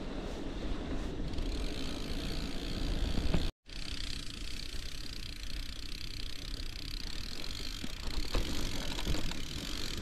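Wind rushing over an action camera's microphone on a moving gravel bike, mixed with tyre rolling noise on a dirt and grass track, and a few light rattles near the end. The sound drops out completely for a split second about three and a half seconds in.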